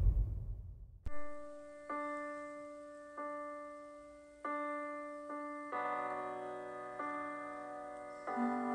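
Slow solo piano: single notes struck about a second apart, each left to ring and fade, then fuller chords from about six seconds in. This is the opening of the song before the voice comes in. In the first second the tail of a louder music jingle fades out ahead of the piano.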